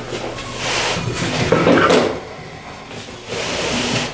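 A sheet of case foam and a 50-pound weight plate being shifted and pushed on a table: rubbing, scraping handling sounds for about two seconds, a short lull, then more near the end.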